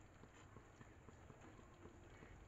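Near silence, with faint irregular ticking and crackling from a steel karahi of soya-chunk gravy cooking on a gas stove.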